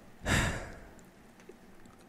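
A man's breathy sigh into a close microphone, starting a fraction of a second in and fading out.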